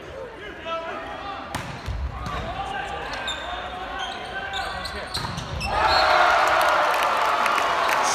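Volleyball rally in a large echoing gym: a sharp ball strike about one and a half seconds in, then a few more hits against a murmur of voices. From about six seconds in comes a loud sustained cheer from the crowd and players as the point is won.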